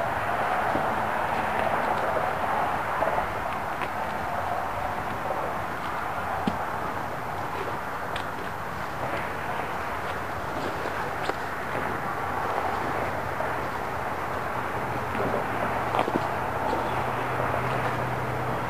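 Steady outdoor background noise: an even rush, with a few faint clicks and a low hum that grows a little louder in the last few seconds.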